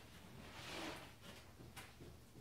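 Faint handling of a plastic cooler on a plywood shelf: a soft scuff about half a second in, then a single small click near the end.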